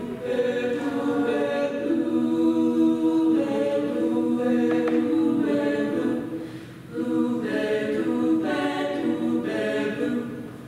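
All-female a cappella group singing in close harmony, holding sustained chords with no instruments. The sound dips briefly about seven seconds in before the voices come back in.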